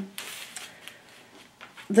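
Parchment-paper pattern piece rustling briefly as it is handled and laid on fabric, followed by a few faint ticks.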